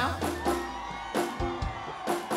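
Live band music: the sung passage ends on a held chord that fades away over about a second, then a few sharp hits start a sparse new rhythm.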